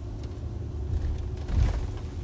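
Low, steady road and engine rumble heard inside a moving passenger vehicle's cabin, with a short louder bump about one and a half seconds in.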